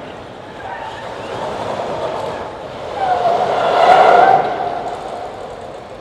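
Jeep Wrangler's engine working under load as it climbs a very steep ramp, swelling to its loudest about three to four seconds in, then easing off.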